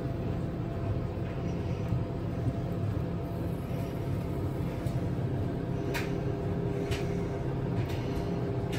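Steady low hum of a running kitchen appliance, with faint sizzling as Yorkshire pudding batter is poured into hot oil in a muffin tin, and a couple of faint clicks near the end.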